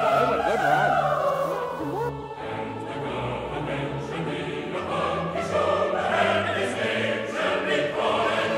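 Background music: classical-style singing in long held notes over an orchestral accompaniment.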